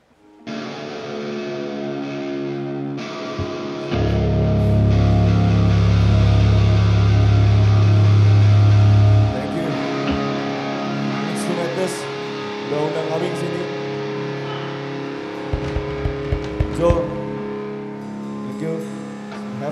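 Live band playing a slow, sustained passage on electric guitar with ringing held chords. A loud low bass note is held for about five seconds from about four seconds in, and a few sharp clicks come near the end.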